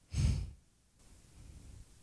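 A man's short sigh, a quick breath out close to the microphone, lasting under half a second just after the start.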